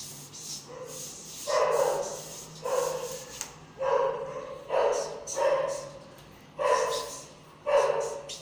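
A dog barking repeatedly, roughly once a second, each bark short and separate.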